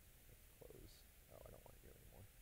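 Near silence: room tone with a faint hiss and a few faint low rumbles about half a second and a second and a half in.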